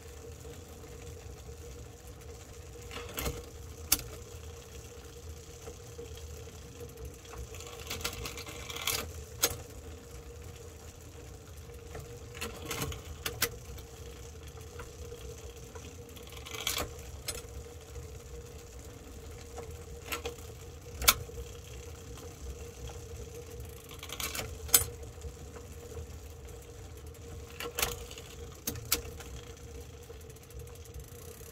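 Drivetrain of a Shimano Dura-Ace AX road bike turning in a stand: the chain runs with a steady whir, broken about a dozen times by sharp clacks and short rattles as the front derailleur shifts the chain between the chainrings.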